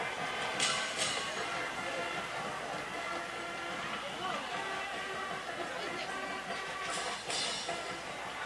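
Faint band music from the stands, with held brass-like notes, under a murmur of crowd voices.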